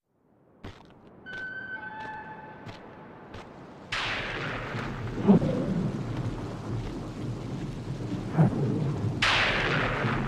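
Thunderstorm: steady rain with a sudden loud crash of thunder about four seconds in, low thunder rumbles twice after it, and another thunderclap near the end. Before the first crash the rain is faint, with a click and a few brief high tones.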